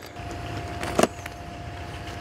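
An engine or motor running steadily with a thin steady whine, and one sharp click about a second in.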